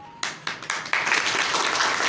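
A small group of people applauding: a few scattered claps at first, filling out into steady clapping about a second in.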